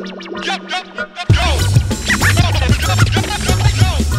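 Hip hop track with turntable scratching: quick sweeping scratches over a sparse held tone, then a little over a second in a full beat with heavy bass drops in and the scratching carries on over it.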